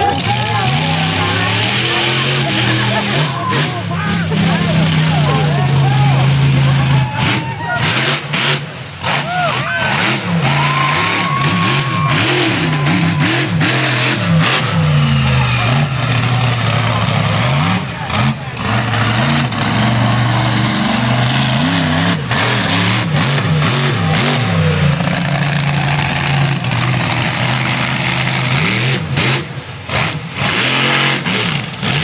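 Monster truck engine revving hard, its pitch rising and falling over and over as the truck drives across a line of cars, with scattered sharp knocks and crunches and crowd voices underneath.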